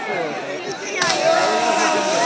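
Crowd voices, then about a second in a sudden splash as a jumper hits the river water, followed at once by a louder burst of shouting and cheering from the onlookers.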